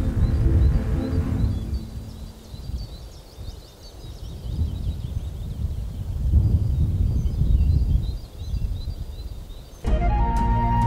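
Background music dies away in the first second or two, leaving outdoor field ambience: a low rumble that swells and fades, and small birds chirping repeatedly throughout.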